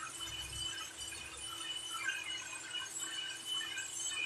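Hand-held hair dryer running steadily on wet hair: a constant rush of air with a high, even whine.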